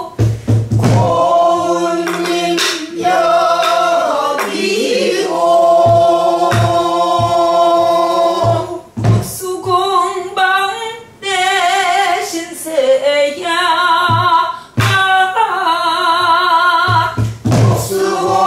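A woman sings a Korean sin-minyo (new folk song) in long held notes with a heavy, wavering vibrato. She accompanies herself with sparse strokes on a buk barrel drum struck with a wooden stick, several sharp thumps spaced a few seconds apart.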